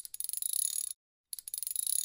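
A ratchet clicking rapidly in two runs of about a second each, with a short pause between. The clicks are fine and high-pitched.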